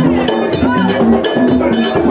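Percussion-driven music with drums and a struck metal bell keeping a repeating rhythm, over moving pitched notes.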